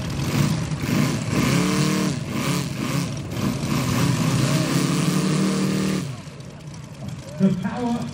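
Moki 250cc radial engines of giant-scale RC warbirds running on the runway, their pitch rising and falling with the throttle. The sound drops away sharply about six seconds in.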